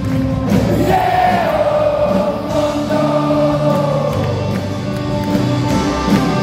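A live rock band playing with singing over it: a held sung line that slides down in pitch over steady drums, guitar and keyboards, heard from far back in a theatre hall.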